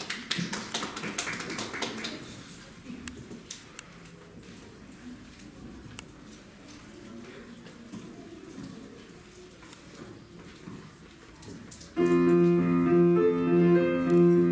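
A scatter of light taps and clicks over quiet room sound, then piano music starts suddenly about twelve seconds in with sustained chords, much louder than what came before.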